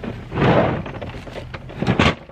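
Plastic storage tote full of shoes being handled and tilted: a burst of noise about half a second in, then a sharp thunk near the end as the tote knocks down.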